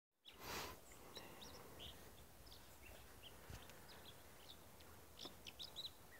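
Faint, short bird chirps, scattered and more frequent near the end, over quiet outdoor ambience. A brief rush of noise about half a second in.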